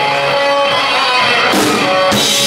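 Live rock band's electric guitar playing chords at the start of a song, with a sharp drum kit hit about a second and a half in as the drums join.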